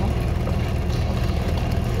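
A steady, low mechanical rumble of a motor running in the background.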